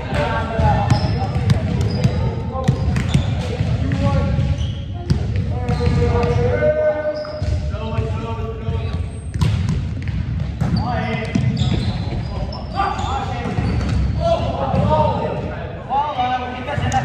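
Several players' voices talking and calling out in an echoing gymnasium, with a volleyball bouncing off the hardwood floor now and then.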